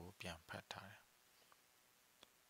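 A reader's voice ends a phrase with a few short, breathy syllables in the first second, then near silence: room tone.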